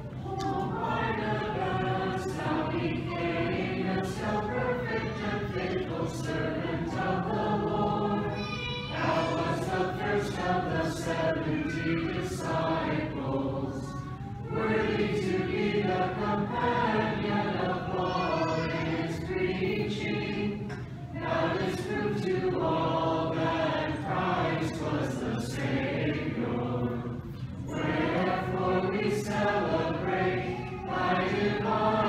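Church choir singing an unaccompanied Orthodox liturgical hymn, phrase by phrase, with short pauses between phrases.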